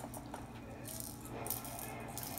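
Faint rattling in a few short bursts, like small hard pieces shaken together.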